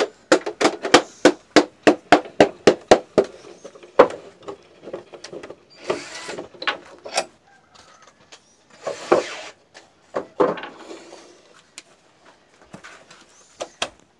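Clamping bolts of a wooden reed-hive press being unscrewed with a metal hand tool: a quick run of sharp clicks, about four a second, for the first three seconds, then occasional knocks and scrapes as the jig is worked loose.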